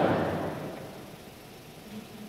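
The last words of a spoken prayer response trailing off and dying away in the church's reverberation over about a second, leaving quiet room tone.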